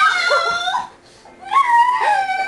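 Dog whining in two drawn-out, high-pitched calls, the second starting about a second and a half in.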